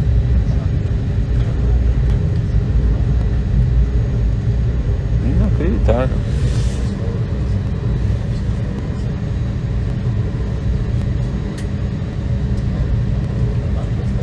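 Steady low rumble inside the cabin of an Airbus A321 airliner taxiing with its engines running, with a constant low hum under it.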